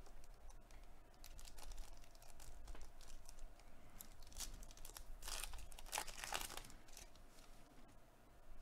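Foil wrapper of a Panini Contenders football card pack crinkling as it is handled and torn open. Irregular crackles are loudest about five to six and a half seconds in.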